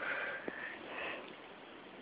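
A faint, breathy sniff lasting about a second, with a small tick in the middle.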